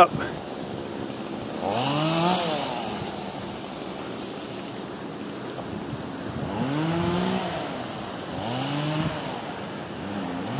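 A chainsaw revving up and back down three times: once about two seconds in, then twice near the end.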